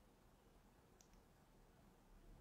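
Near silence: faint room tone, with one faint, short double click about a second in.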